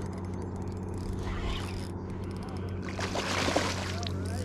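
A hooked fish thrashing and splashing at the surface beside a kayak, a short burst of splashing about three seconds in, over a steady low hum.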